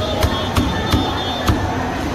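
A heavy cleaver chopping through a large fish head on a thick wooden chopping block, four sharp strikes in quick succession: three about a third of a second apart, then one more after a short pause.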